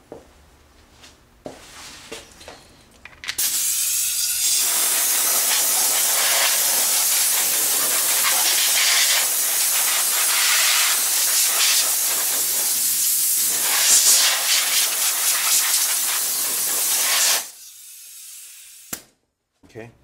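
A long, loud, steady hiss of compressed air blown into an open desktop computer case. It starts a few seconds in, runs for about fourteen seconds with small surges, and cuts off suddenly.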